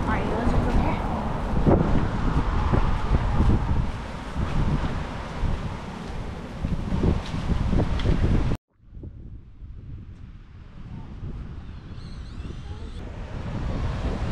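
Wind buffeting the microphone while walking, a loud low rumbling rush. About two-thirds through it cuts off abruptly, giving way to a much quieter, steady rush of open-beach ambience.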